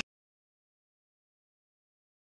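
Complete silence: the sound cuts off abruptly right at the start and nothing at all follows.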